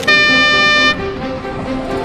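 Railway locomotive horn giving one short, high-pitched blast of about a second that starts and stops suddenly, over background music.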